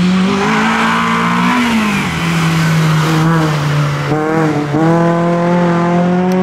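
Renault Clio rally car's engine pulling hard, with tyre squeal in the first second or two as it corners. The revs hold steady, dip briefly about four and a half seconds in, then climb steadily as the car accelerates away.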